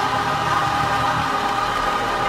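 A large gospel mass choir singing together, holding long notes.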